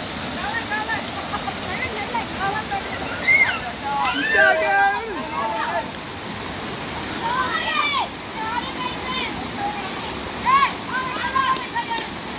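Steady rush of river water pouring over a small rocky cascade, with people's voices calling out over it. The voices are loudest about a third of the way in and again near the end.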